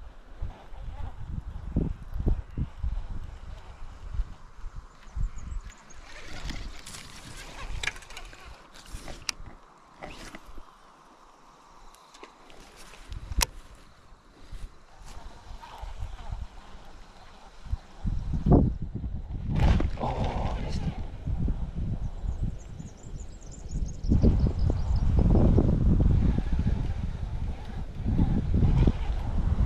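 Wind buffeting the microphone, heavier in the last third, with a run of sharp clicks in the middle from a baitcasting reel being handled.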